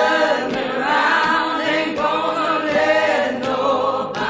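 A choir singing music with long held notes in several voices, a new phrase starting every second or two.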